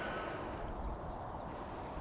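Faint outdoor background noise on a riverbank: a low, steady rumble with a light hiss and no distinct events.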